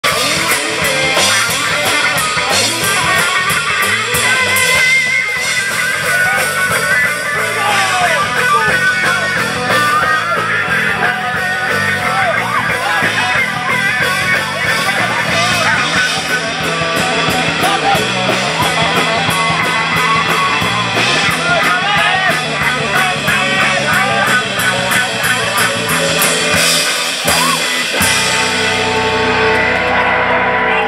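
Live rock band playing loud with electric guitars and drums. Near the end the drumming stops and the guitars ring on.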